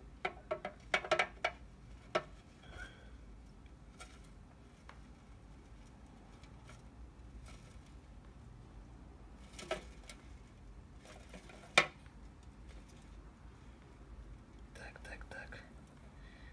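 Quiet handling sounds: a tool tapping and clicking against a plastic tub, a few sharp clicks in all, the loudest about twelve seconds in. Low muttering comes near the start and the end.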